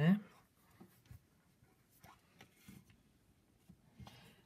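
Faint handling sounds of hands working a porcelain clay slab on a canvas cloth: light rubbing and a few small taps.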